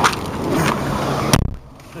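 Car door being pulled shut with a single solid thump about a second and a half in. The steady background noise before it drops away sharply once the door is closed.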